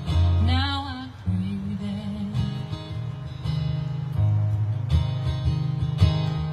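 Acoustic guitar strummed in a slow ballad, with a woman's voice singing one short sliding phrase about half a second in.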